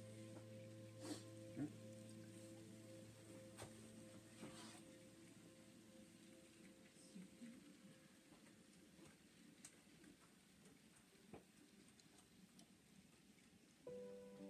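Near silence: a faint steady low hum that fades away over the first half, with a few faint scattered clicks.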